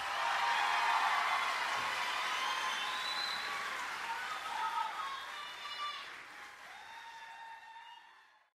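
Audience applauding and cheering, with a few shouts, dying down gradually over the last few seconds.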